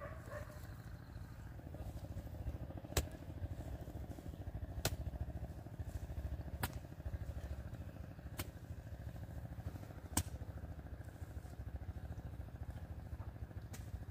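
Hoe blade chopping into clods of soil, a sharp strike about every two seconds as the hoe is swung again and again, over a steady low rumble.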